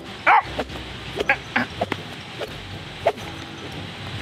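A man's short grunts in a quick series as a Stinger tactical whip is swung and strikes a squash, with sharp smacks among them.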